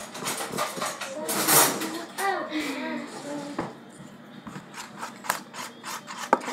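Children's voices talking with a sharp knock about a second and a half in, then a run of light clicks and taps of plastic containers being handled on a counter in the last couple of seconds.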